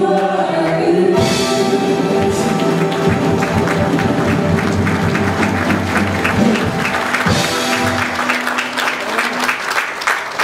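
A mixed worship choir with microphones holding the closing chord of a praise song over accompaniment, then clapping from the congregation and the singers from about three seconds in while the music sustains underneath.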